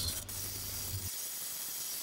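Angle grinder with a cutoff wheel cutting through square steel tubing, heard as a steady hiss.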